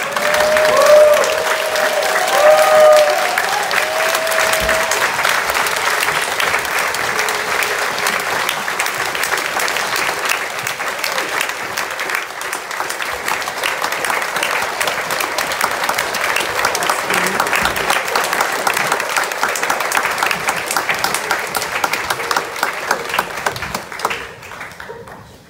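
Audience applauding steadily, with a few cheering calls in the first few seconds.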